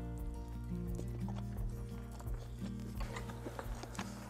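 Soft background music, a slow melody of held notes stepping in pitch, with a few faint clinks of forks on plates.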